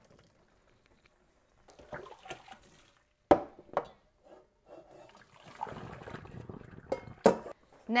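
Parboiled rice being drained in a stainless steel colander over the sink: water pouring and dripping through the rice, with two sharp metal clanks of the colander, one about three seconds in and one near the end.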